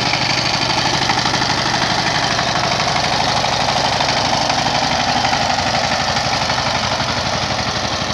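Two-wheel power tiller's single-cylinder diesel engine running steadily under load with a rapid, even chugging, as its cage wheels work through a flooded paddy field.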